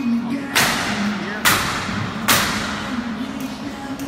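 Three sharp, echoing knocks a little under a second apart: nails being driven into the wood framing of a tiny house, ringing through a large warehouse, with a radio playing music underneath.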